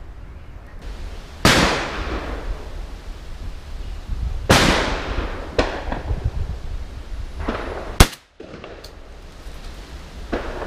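Shotgun shots at a clay range. Two about 1.5 and 4.5 seconds in each ring out with a long echoing tail, a fainter one follows soon after the second, and a sharp, very loud crack about 8 seconds in is the loudest of all.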